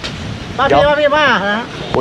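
A man's voice speaking, one drawn-out, pitch-bending phrase about half a second in, over light outdoor background noise.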